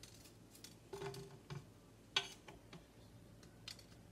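Faint, scattered small clicks and taps from hands handling a cut-open chilli pod and picking out its seeds, with one sharper click a little after the middle.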